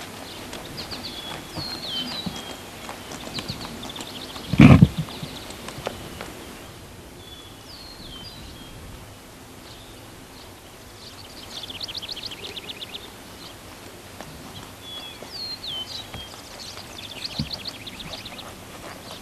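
A horse's hooves falling softly on the dirt of a riding pen as it is ridden at a walk and trot, with songbirds chirping and trilling in repeated phrases. About five seconds in there is one short, loud, low burst.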